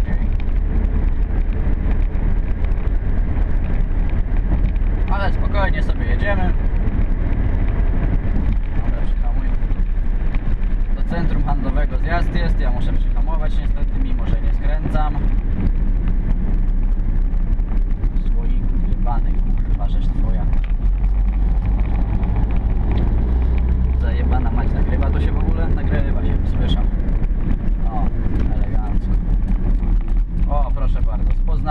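Steady engine and road noise inside a small car driving on a city road, with a voice heard on and off over it.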